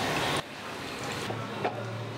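Soft hiss of curry simmering in a pot, which cuts off abruptly less than half a second in. A quieter hiss with a low steady hum follows, and there is one light knock a little before the end.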